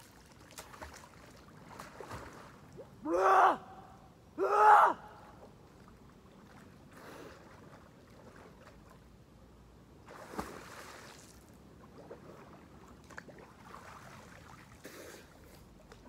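Two loud, high-pitched gasping cries from a person in river water, about a second and a half apart, a few seconds in. Quiet water splashing runs under them, with a sharper splash about ten seconds in.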